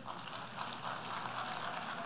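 Audience applauding, starting as the pause begins and quickly swelling to a steady level.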